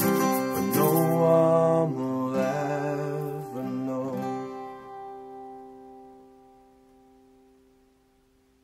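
Acoustic guitars strumming the song's closing chords, then a last chord left to ring and slowly die away to near silence.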